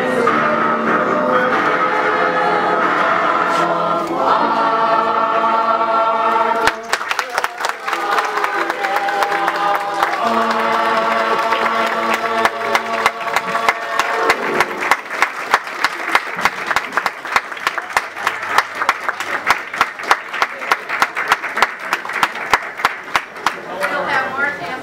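Mixed choir singing sustained chords. About seven seconds in the song turns rhythmic, and sharp claps in time, roughly two a second, run under the singing to the end.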